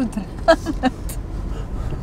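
Low, steady rumble inside a car cabin, from the car's engine and running gear, with two short syllables from a voice about a third of a second apart near the middle.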